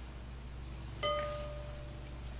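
A glass trifle bowl is struck lightly once, about a second in, and rings out with a clear bell-like tone that fades over most of a second.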